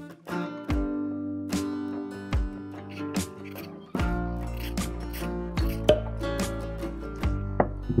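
Acoustic guitar background music with a steady beat. From about halfway, the scrape of a metal vegetable peeler stripping a carrot is also heard.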